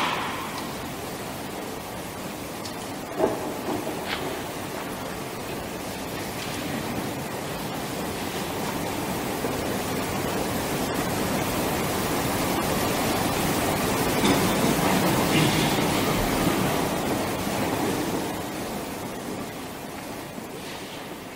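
Steady hiss of room noise in a lecture hall, picked up by the lectern microphone, swelling in the middle. There is a sharp knock about three seconds in and a fainter click a second later.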